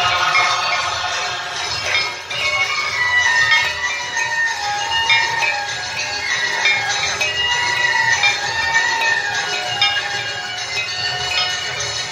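Ganga aarti music: a devotional hymn sung as one continuous, gliding melody over the steady clanging of many bells.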